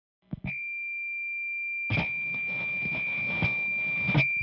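Electric guitar rig through a high-gain valve amp before playing: a click, then a steady high-pitched whine. About two seconds in, a hiss with small knocks joins it.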